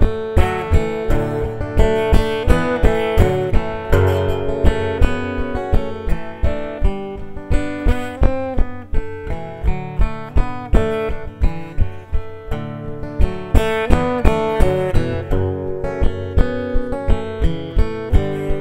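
Acoustic guitar played solo, an instrumental break between sung verses, with chords and picked notes struck in a steady rhythm.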